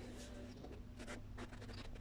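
Faint indoor room tone: a steady low hum with light rustling and a few soft scattered clicks.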